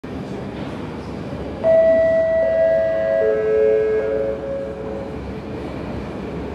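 Metro station platform ambience: a steady low rumble. About a second and a half in, a three-note falling chime sounds, each note held and overlapping the next, and it dies away by about five seconds.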